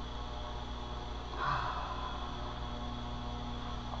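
Steady electrical mains hum, with one short sniff about one and a half seconds in as a wax melt is held to the nose and smelled.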